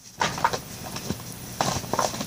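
Short bursts of crinkling and rustling as a wrapped present is opened.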